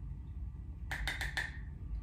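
A quick run of four or five light clicks or taps about a second in, from makeup packaging and a brush being handled while loose setting powder is picked up, over a steady low hum.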